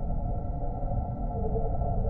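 Ambient drone music made from processed field recordings of a car assembly plant: a steady, dense low rumble with faint held tones, and a short tone rising out of it about a second and a half in.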